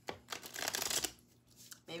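Tarot deck being riffle-shuffled: a tap, then a fast crackling ripple of cards interleaving for under a second, followed by softer rustling as the deck is squared.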